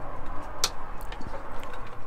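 A plastic rocker light switch clicks once as it is pressed on, about half a second in, followed by a few fainter ticks, over steady background noise.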